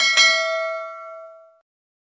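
A single bright bell ding sound effect, the notification-bell chime of a subscribe animation. It is struck once and rings out, fading away over about a second and a half.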